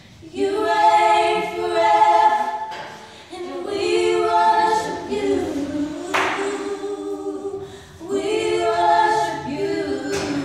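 Female voices singing a gospel song a cappella, with no instruments, in long held phrases that break off briefly about three seconds in and again about eight seconds in. A brief hiss comes a little after six seconds.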